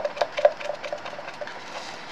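A stir stick scraping and tapping resin out of a plastic measuring cup: a quick run of clicks, with two sharp taps in the first half-second, then fainter scrapes.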